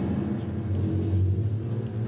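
A low, steady rumble in the stage performance's sound score, carried on from the drum-heavy music just before.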